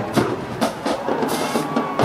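Marching band drum line playing a run of sharp drum strikes, bass drum among them.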